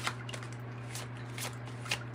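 A deck of tarot cards being shuffled by hand, a few short card snaps about every half second, over a steady low hum.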